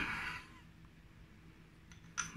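A brief soft scrape of a fork against a small glass bowl as beaten egg is tipped out, in the first half-second, then a quiet kitchen with a faint steady low hum.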